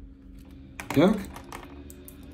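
Pen writing on a paper notebook page: light scratching and small taps of the pen tip. A short voiced sound about a second in, the loudest thing heard.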